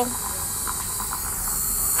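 Steady high hiss with faint voices in the background.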